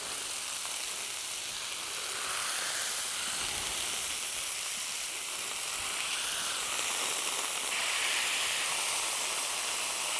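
80/20 beef burger patties sizzling steadily on the hot steel surface of a Camp Chef Flat Top Grill as they are smashed flat with a spatula.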